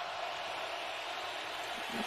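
Steady, even crowd noise from a football game broadcast, a hiss-like murmur with no single voice or event standing out.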